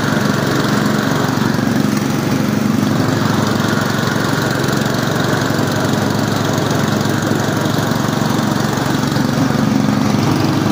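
Tecumseh 12 hp engine of a CMI ride-on lawn mower running at a steady speed while the mower drives across grass.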